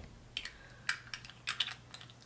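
A handful of light, irregular clicks and taps as small gel eyeliner jars are handled and set down.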